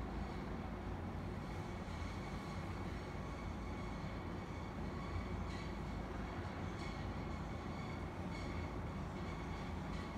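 Otis traction elevator car travelling in its hoistway toward the landing, heard through the closed doors as a steady low rumble with a faint high tone above it.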